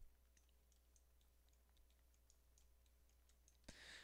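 Near silence: room tone with a low hum and a scatter of faint clicks from a computer mouse and keyboard.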